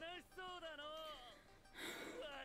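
Faint dialogue from the anime: a character speaking Japanese in two short, high-pitched phrases over background music.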